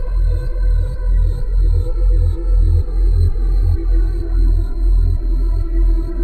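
Improvised ambient electronic music played live on iPad synthesizer apps: a deep bass pulsing about twice a second under sustained, steady synth tones.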